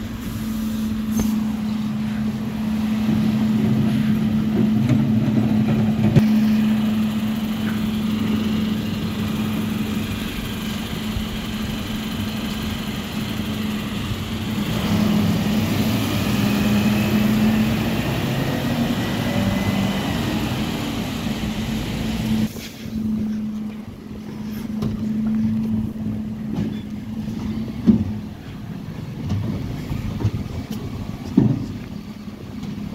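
Dennis Eagle Olympus Elite bin lorry running with a steady engine hum while its rear lift empties wheelie bins, with occasional clunks and a louder one near the end.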